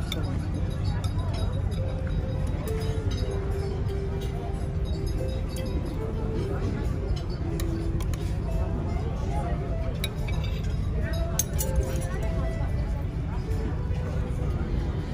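Metal fork and spoon clinking and scraping against a serving platter as a whole grilled fish is filleted, in short scattered clicks over a steady low rumble and background music.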